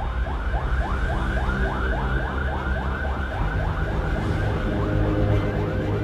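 Police siren in its fast yelp mode: quick rising sweeps, about four a second, repeating steadily, with a low steady drone underneath.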